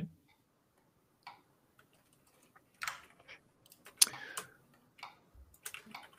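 Scattered, irregular clicks and taps of a computer mouse and keyboard as a 3D model is worked on, a few at a time with short gaps between them.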